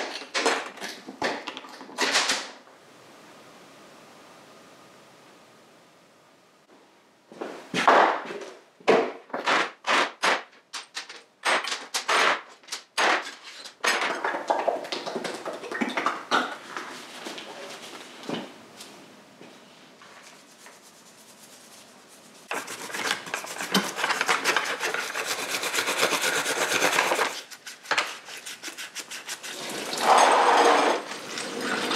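Small steel motorcycle exhaust clamps, bolts and clip nuts being handled and taken apart on a metal workbench: sharp clicks and knocks, several a second in places. Later comes a few seconds of steady rubbing hiss.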